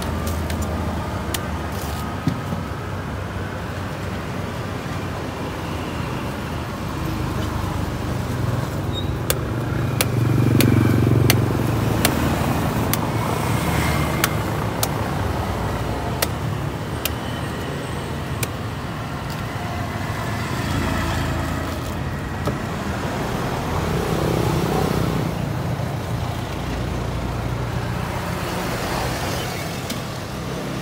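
Road traffic: vehicles passing by, with a steady rumble that swells about ten seconds in and again later. Scattered sharp clicks are heard over it.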